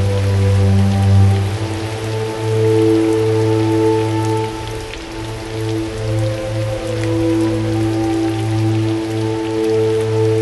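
Steady rain falling with scattered drops, under a slow film score of long held low notes.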